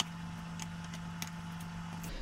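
A steady low hum with a few faint light clicks, and a small tap at the very start as a wooden ring blank fitted with a tungsten ring core is set down on the bench.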